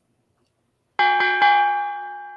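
A boxing-ring bell sound effect struck three times in quick succession about a second in, then ringing on and fading slowly: the bell marking the end of the round as the countdown timer runs out.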